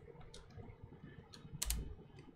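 Computer keyboard keystrokes, a few faint separate clicks with a louder keystroke about three-quarters of the way through as a terminal command is entered.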